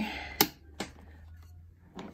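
Two sharp plastic clicks about half a second apart, the first louder: a CPU cooler's push-pin mounting tabs snapping home into the motherboard as they are pressed down.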